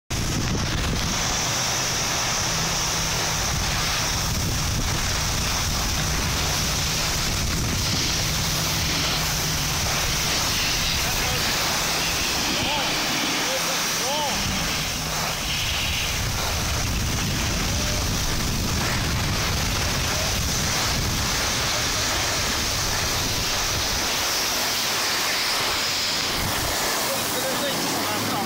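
Steady rushing wind noise on the phone's microphone while moving down a ski slope, with a continuous hiss of snow.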